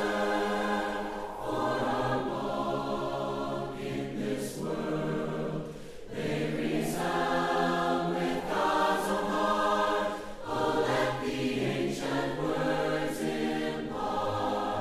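A choir singing held chords in phrases of about two seconds each, with short breaks between phrases.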